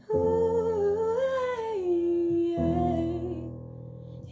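A woman humming a wordless, improvised melody that rises and then falls to a held lower note, over sustained keyboard chords, with a new chord coming in about two and a half seconds in. Recorded on a phone.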